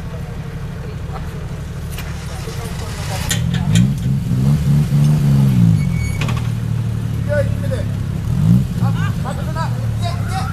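Off-road 4x4's engine idling, then revved up and back down once over about three seconds during the recovery of a rolled-over vehicle, with another short rev later. Voices are heard near the end.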